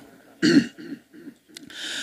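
A man clears his throat once into a microphone: a short loud burst about half a second in, followed by a few quieter throat sounds and a brief hiss near the end.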